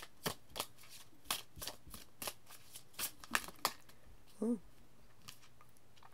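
A deck of oracle cards being shuffled by hand: a run of irregular soft card slaps and flicks, about two or three a second, that stops a little over halfway through.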